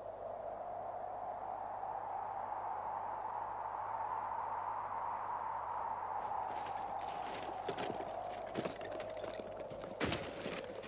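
Cartoon sound effect of cold wind howling steadily, rising slightly and then falling back. In the last few seconds, scattered light knocks and clicks join in, like stones knocking on rock.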